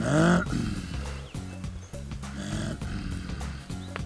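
A person makes a short, deep throat-clearing grunt about a second long at the start, imitating the gorilla greeting call, which is a friendly hello sound to gorillas. Background music plays throughout.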